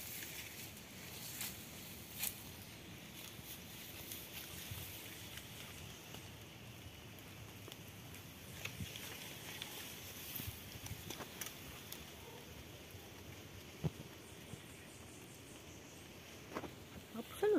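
Quiet outdoor ambience with scattered rustles and a handful of short, sharp crackles of dry banana-leaf litter. The loudest crackle comes near the end.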